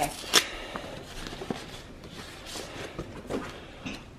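Paper and cardboard being handled as a box is unpacked and a greeting card is lifted out: a couple of sharp clicks at the start, then soft rustling and rubbing.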